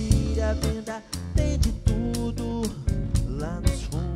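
Live band playing funky, soulful music: electric guitar over a drum kit with a steady beat of bass-drum and snare hits.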